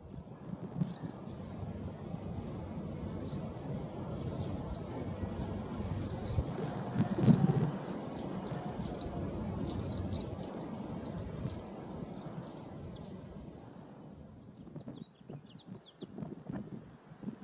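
Swallows giving short, high alarm chirps about twice a second as they mob a Cooper's hawk, over a low background rumble that swells briefly about seven seconds in.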